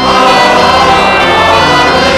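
Choir and congregation singing a hymn with pipe organ accompaniment. The voices come in on a fresh chord right at the start and hold steady.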